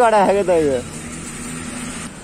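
A man laughing in a few short, falling bursts during the first second, then a steady low hum continues.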